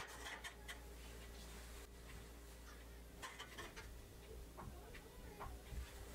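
Faint, scattered light taps and scrapes of stainless steel steamer pans being set down and stacked on a multi-layer steamer pot.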